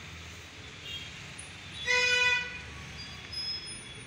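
A vehicle horn honks once, a single steady toot of about half a second, about two seconds in, over a low steady background hum.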